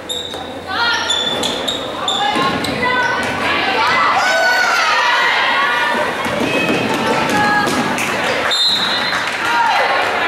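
Basketball game play on a gym's hardwood court: the ball bouncing, with sneakers squeaking and voices calling, all ringing in the large hall.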